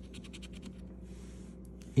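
Coin scratching the latex coating off a scratch-off lottery ticket in quick back-and-forth strokes, about ten a second. It ends in a short continuous scrape and stops shortly before the end.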